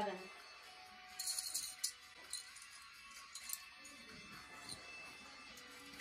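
Light clicking and rattling of small plastic Ticket to Ride train pieces being handled and set down on the board, most busily about a second in, with faint murmured voices.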